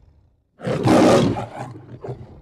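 The Metro-Goldwyn-Mayer logo's lion roar: one loud, rough roar starts about half a second in and trails off into a shorter growl near the end.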